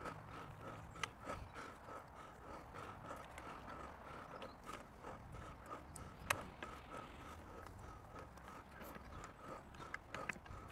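Metal-tined garden rake drawn through loose soil: faint scraping with scattered small clicks as the tines catch stones, and one sharper click about six seconds in.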